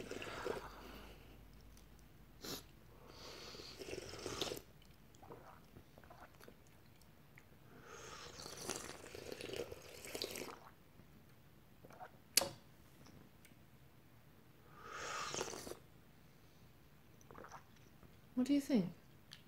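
Faint airy slurps of tea sipped from small tasting cups, three of them a few seconds apart, with two short sharp clicks between them; the louder click comes a little past the middle.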